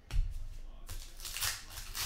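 A thump on the table, then a foil trading-card pack wrapper crinkling and tearing as it is pulled open, in quick rustling strokes from about a second in.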